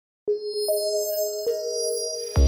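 Logo-sting music of bell-like chime notes: three notes struck one after another, a quarter second, under a second and about a second and a half in, each ringing on under the next.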